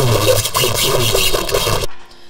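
A loud, harsh, distorted noise burst with a voice audible inside it, cutting off suddenly near the end.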